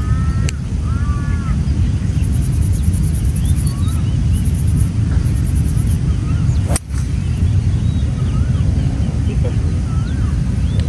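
A steady wind rumble on the microphone, with birds chirping, and one sharp click about two-thirds of the way in as a 7-wood strikes a golf ball off the turf.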